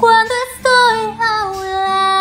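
A woman's high singing voice in a ballad, wordless here: a short note, then a long held note that falls slightly in pitch, over faint instrumental accompaniment.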